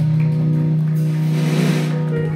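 Live band music holding one long, steady low chord.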